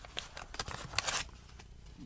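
A packaging bag being handled and crinkled: a run of rustles and crackles, loudest about a second in, then quieter.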